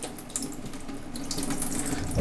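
Water poured slowly from a plastic cup into an orchid's pot of granular semi-hydroponic medium, trickling through and draining out onto a stainless steel tray as the pot is flushed to rinse out dust. The trickle runs steadily throughout.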